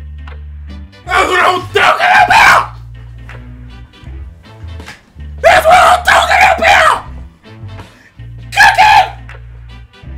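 A man yelling and screaming excitedly in three loud outbursts: about a second in, in the middle, and near the end. Behind him runs background music with a steady bass line.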